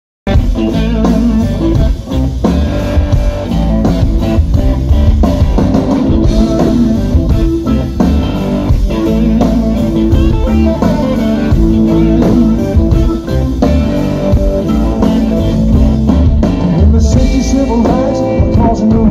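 Live blues-rock band playing loud, led by electric guitar, with drums and keyboards.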